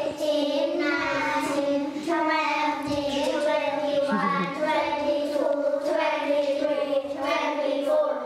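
A group of young children singing together in unison, holding long steady notes with short breaks between words.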